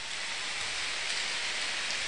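A large crowd clapping: steady, dense applause.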